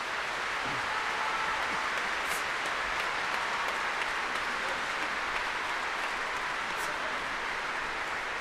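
Large concert audience applauding, a dense, even clapping that holds steady after the orchestra and singers have stopped.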